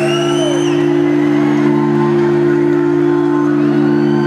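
Keyboard holding one sustained chord, steady and unchanging, live in a hall. A single rising-and-falling whoop from the audience crosses the first second.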